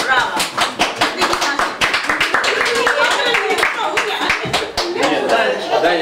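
A small group of people clapping their hands in quick, dense applause, with voices talking over it.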